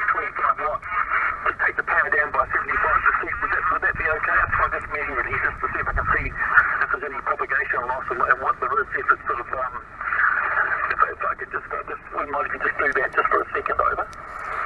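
Single-sideband voice of a distant station heard from the loudspeaker of a Yaesu FT-857D HF transceiver: continuous talk, thin and narrow-toned with band noise under it. The long New Zealand-to-UK path gives the signal a noticeable multipath echo.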